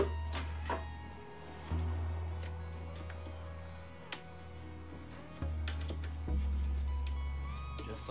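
Background music with slow, held bass notes that change every second or two, and one sharp click about four seconds in.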